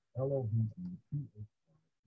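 Speech: a voice saying a short phrase that trails off about two-thirds of the way through.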